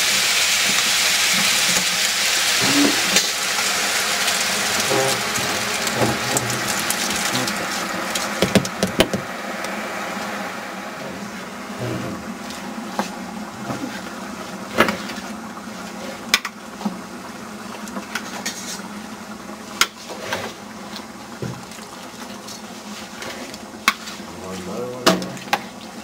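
Onions and garlic frying in olive oil in a large aluminium stockpot as cut tomatoes are tipped in: loud sizzling that dies down after about eight seconds as the pot fills with tomatoes, with scattered knocks and clatters throughout.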